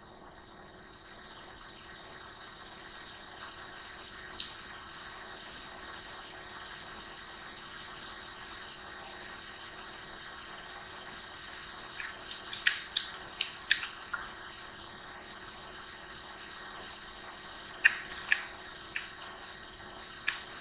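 Steady background hiss with short, sharp computer-mouse clicks: one about four seconds in, a quick cluster of five or six around twelve to fourteen seconds, and a few more near the end.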